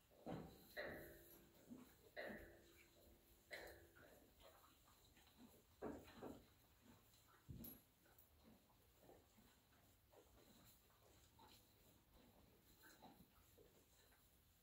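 Faint animal sounds: several short ones in the first eight seconds, two of them carrying a held tone for about a second, then only small scattered sounds.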